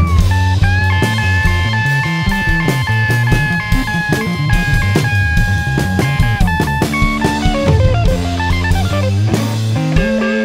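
A live psychedelic rock band plays with electric guitar, drum kit and a low bass line. A long note is held for several seconds, then a quick run of changing notes follows near the end, with cymbals and drums struck throughout.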